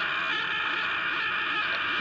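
An animated character's continuous scream, looped so that it runs steady and unbroken.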